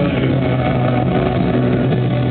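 Live band music with a steady low drone of held notes. It is recorded loud and coarse on a camera in the crowd.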